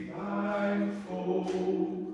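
A group of voices singing together in slow, held notes that change pitch every half second or so, the phrase ending near the close.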